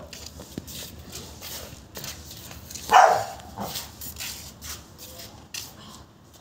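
A pit bull barks once about three seconds in, with a smaller sound just after it.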